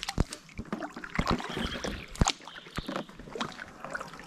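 Kayak paddling on calm, slow water: the paddle blade dipping in and water dripping off it, heard as irregular splashes and sharp clicks.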